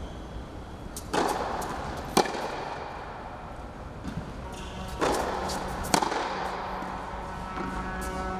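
Tennis ball being struck with a racket on an indoor court, in two pairs of hits: each pair is a duller knock followed about a second later by a sharp racket-on-ball crack that echoes in the hall. The first pair comes about a second in, the second about five seconds in.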